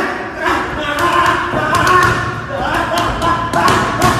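Boxing gloves hitting a trainer's focus mitts in a run of sharp smacks, bunched mostly in the second half, with voices talking over them.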